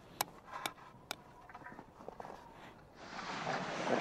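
Hammer strikes on tent pegs: three sharp knocks about half a second apart in the first second. Near the end comes a rising rustle of heavy canvas tent cloth being handled.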